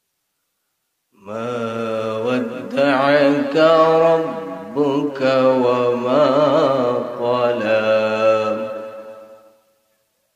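A man's voice reciting the Quran in a melodic, drawn-out chanting style: one long ornamented phrase with a wavering pitch, starting about a second in and fading out near the end.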